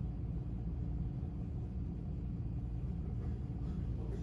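Steady low rumble with a faint even hum: the background noise of the room.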